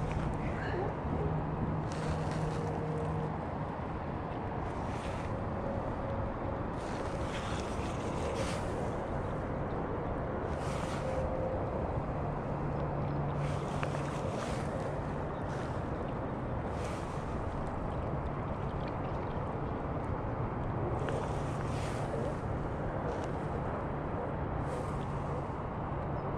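Steady wind on the microphone and waves washing on the rocks of a jetty. A low hum comes and goes three times, and there are about ten short, brief noises.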